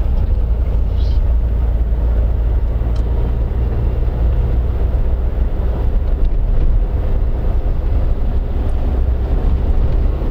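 Steady low rumble of a car's engine and tyres, heard from inside the cabin while it drives slowly along a street.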